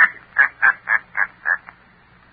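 A man laughing on an old radio broadcast recording: a run of short 'ha' bursts, about four a second, dying away about three quarters of the way through. It is the villain's gloating laugh after a boast.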